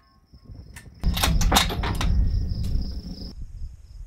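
Bolt-action rifle's bolt being worked between shots: several sharp metallic clacks over a rough rumble of wind and handling noise, which stops abruptly after about three seconds.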